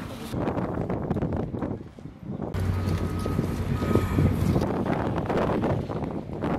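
Street noise with a motor vehicle running. About two and a half seconds in, a steady low engine hum sets in suddenly.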